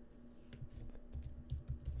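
Typing on a laptop keyboard: a quick, irregular run of light key clicks.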